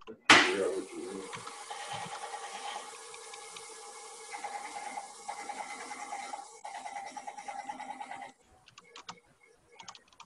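Wood lathe spinning a wooden blank while a hand-held turning tool cuts it: a sharp catch as the tool meets the wood, then a steady cutting sound over the lathe's hum, which stops abruptly about eight seconds in as the tool comes off. A few light ticks follow.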